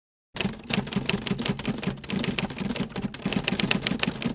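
Typewriter keys clacking in a quick, fairly even run of about seven strokes a second, starting suddenly a third of a second in: a typing sound effect laid under a title being typed out letter by letter.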